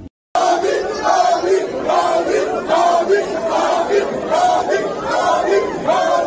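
A large crowd shouting and chanting together with raised voices, in a repeating rising-and-falling pattern. It starts abruptly after a split second of silence near the start.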